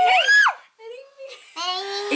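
Young voices singing playfully: a long held note ends with a quick squeal that rises and falls, then after a short lull another held, sung note starts near the end.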